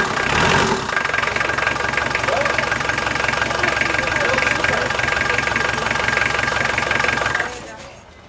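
Canal boat engine idling with an even, rapid beat and a steady whine, driving a newly fitted PowerTwist Plus link V-belt. About seven and a half seconds in it is shut off and the sound stops suddenly.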